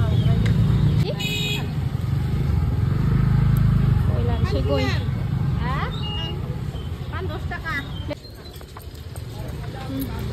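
People talking in a street market over a steady low rumble of road traffic, which drops away about eight seconds in. A brief high-pitched tone sounds about a second in.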